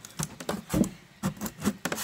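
Irregular light knocks and scrapes as old drawn comb in angle-cut wooden frames is pushed and wedged down into a peat pot by hand.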